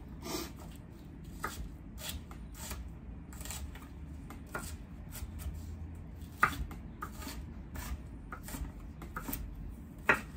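Chef's knife chopping onion on a wooden cutting board: uneven knocks of the blade against the board, about two a second, with one louder knock about six and a half seconds in.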